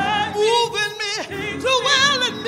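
A woman singing a gospel song solo at full voice into a microphone. She holds her notes with a wide vibrato, and her pitch falls sharply between phrases.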